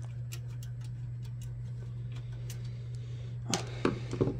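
Light, scattered metal ticks and clicks of a screwdriver working screws on a computer power supply, with two louder clacks near the end over a steady low hum.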